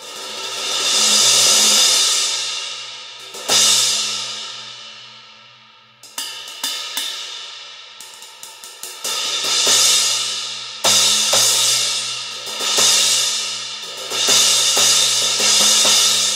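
Meinl Byzance Extra Thin Jazz Crash cymbal, 18-inch, struck with sticks. A swell builds for about a second and a half and rings out, then one crash washes out slowly over a couple of seconds. After some light quick taps, repeated crashes come every second or two in the second half.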